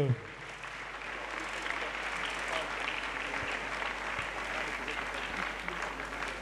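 A congregation clapping steadily, applauding in praise of God in answer to a call to clap for the Lord.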